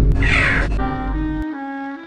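A loud low rumble fades away while a short harsh caw sounds about a quarter second in; then a saxophone melody starts, moving from one held note to the next.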